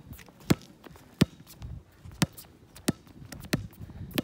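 A small rubber ball dribbled on a concrete court, bouncing about five times in sharp, separate hits a little under a second apart.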